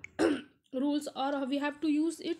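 A person clears their throat once, a short rough burst, then carries on speaking.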